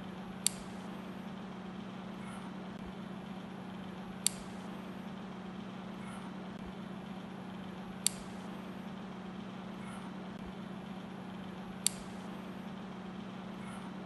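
Steady low electrical hum over faint hiss, broken by a short sharp click about every four seconds, four times in all.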